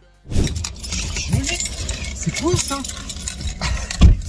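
Car cabin on the move: a steady low road and engine rumble with a constant light rattle of small clicks, and a man's short grumbling noises, cutting in after a moment of silence.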